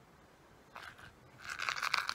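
A small jewellery box being handled and opened: a few light clicks, then about half a second of dense crackling and crunching near the end.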